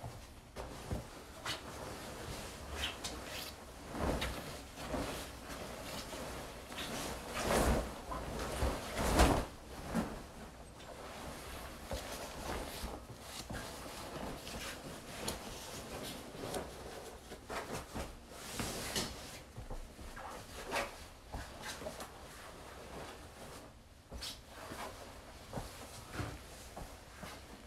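Bedding rustling and swishing as a comforter and sheets are pulled, shaken and spread over a bed close to the phone, with soft thumps mixed in. The rustles come irregularly throughout and are loudest around eight to ten seconds in.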